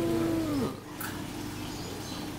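A person's voice holding one drawn-out note, like a long 'ooh', that falls away about two-thirds of a second in. A faint steady hum and a single click follow.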